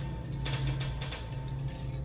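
Eerie sound-design underscore: a steady low drone with clusters of quick mechanical clicks and ticks over it.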